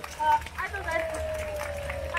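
Festival crowd voices: people calling out and chattering, with one voice holding a long, slowly falling call through the second half.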